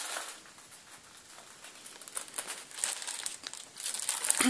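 Paper rustling and crinkling irregularly as documents are handled and leafed through.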